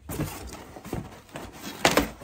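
Cardboard shipping box and its plastic-sealed contents rustling and scraping as the package is pulled out by hand, with one sharp snap of cardboard near the end.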